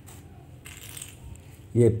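Plastic beads clicking together faintly as a hand picks through them in a plastic bag, with a brief louder patch about a second in. A man says a single word near the end.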